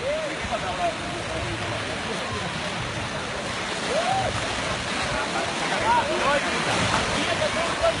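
Surf washing onto a sandy beach, a steady rush that grows louder about halfway through, with short shouts and chatter of voices scattered over it.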